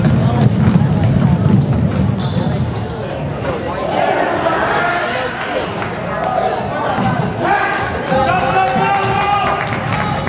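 Basketball game in a gym: the ball bouncing on the hardwood court amid running feet, with players and coaches shouting.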